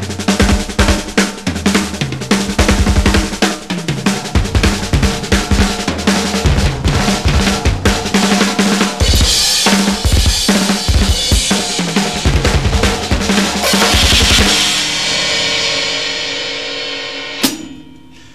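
Drum kit with two bass drums playing fills around the snare and toms, with some hand licks doubled by quick flurries of double bass drum strokes, and cymbal crashes. The passage ends on a crash that rings out for about three seconds, with one last hit near the end.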